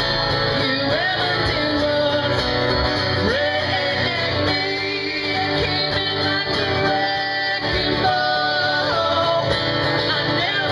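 A woman singing a pop ballad live with guitar accompaniment.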